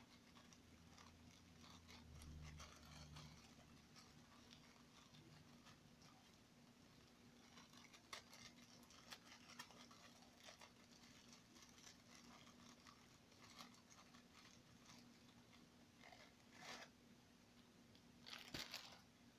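Near silence: a steady low hum under faint, scattered crinkles and clicks of a plastic sleeve of graham crackers being handled.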